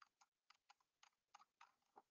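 Near silence with faint, quick, irregular clicking from a computer mouse, about seven clicks a second, as CT image slices are scrolled through.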